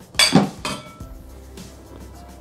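A short, loud clatter of a spatula and plastic mixing bowl being picked up and knocked together, with a smaller knock just after and a brief ring, over soft background music.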